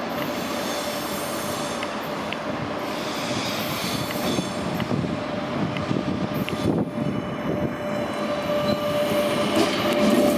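CP Series 2400 electric multiple unit running past on curved track, with wheels squealing on the curve over the running rumble and rail clicks. It grows louder toward the end.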